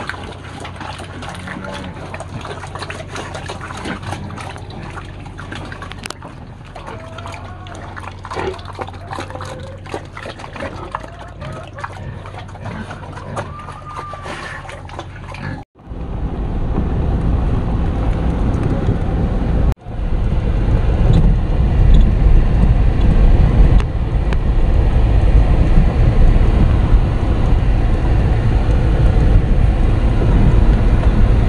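Pigs eating wet slop from a trough, slurping and smacking with many small wet clicks. About halfway through it cuts abruptly to a car driving on a dirt road: a loud, steady low rumble of engine and road noise.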